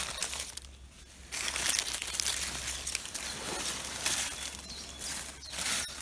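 Dry fallen leaves rustling and crackling in uneven spells, quieter for the first second or so.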